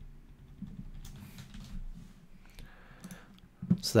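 Faint, irregular clicks of a computer keyboard and mouse being used at a desk.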